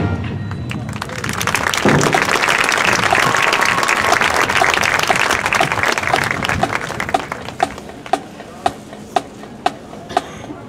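Crowd applauding and cheering for a high school marching band, swelling to its loudest a few seconds in and then fading. In the last few seconds a steady drum tick, about two a second, begins as the band keeps time.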